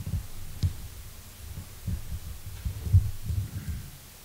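Irregular low, muffled thumps and bumps, a dozen or more in quick uneven succession: handling and table-knock noise picked up through the microphones standing on the conference table.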